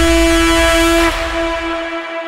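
The closing held note of a slap house track: one long synth note over a low bass. The bass dies away near the end and the whole gets quieter from about a second in.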